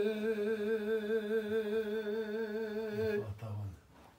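An elderly man singing a Kurdish folk song unaccompanied, holding one long note with a wavering pitch that breaks off after about three seconds.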